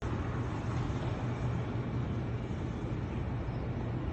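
Steady road traffic noise with a constant low hum, with no distinct events standing out.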